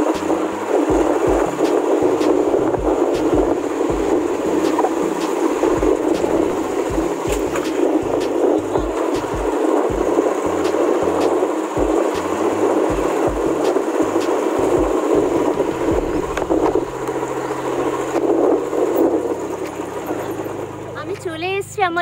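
Steady rushing wind and road noise on a camera riding a moving motorbike along a rough dirt road. A woman starts speaking near the end.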